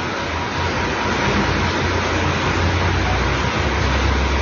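Steady loud rushing noise with a low hum through the handheld microphone while it is passed from one speaker to the next.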